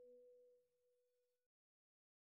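Near silence: the faint tail of a held note of soft background music fades away within the first second or so, then cuts to total silence.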